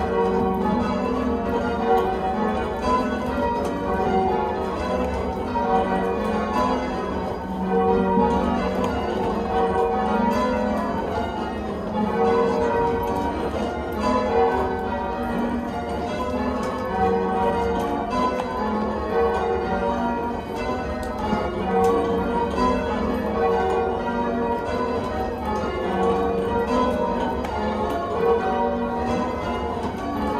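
Change ringing: a ring of church bells swung full circle by a band of ringers on ropes, striking one after another in a steady, continuous sequence, heard from the ringing chamber below the bells.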